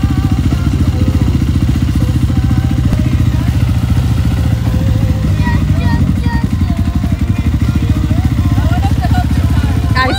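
Off-road vehicle engine running steadily near idle close by, a dense, even low rumble with no revving. Faint voices can be heard behind it.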